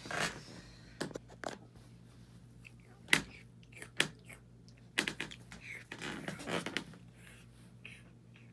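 Handling noise as a hand moves the phone and a plush toy on bedding: irregular sharp clicks and taps with short rustles, the two loudest clicks about a second apart near the middle, over a faint steady hum.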